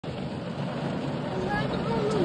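Heavy rain and hail beating on a car's roof and windshield, heard from inside the cabin as a steady, dense patter.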